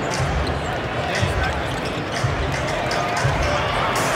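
Basketball arena crowd noise: many voices chattering, with deep thumps that come in pairs about once a second.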